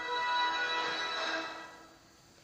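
Music from a DVD soundtrack playing through a television's speaker, with steady held notes that fade out near the end.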